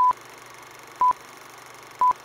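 Film-leader countdown sound effect: a short high beep once a second, three in all, over a steady hiss.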